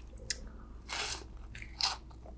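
Close-miked bites and chewing of a toasted rainbow grilled cheese sandwich, with two louder bites, one about a second in and the loudest near the end.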